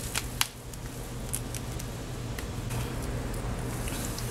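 Hands handling clip-in hair extensions and pulling off the ties that hold them: a few small, scattered clicks and rustles over a steady low hum.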